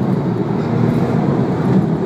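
Twin-turbo flat-six of a Porsche 911 Turbo S (997) running at speed, heard from inside the cabin as a steady low drone mixed with tyre and road noise.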